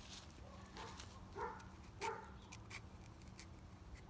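A dog barking faintly, three short barks about half a second apart, over light scattered clicks and rustling.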